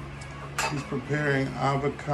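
A single sharp clink of a knife against a dish about half a second in, over background music with a sung vocal.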